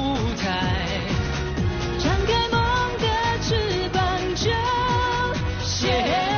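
A male pop singer sings a Chinese-language pop song with full band backing and a steady drum beat.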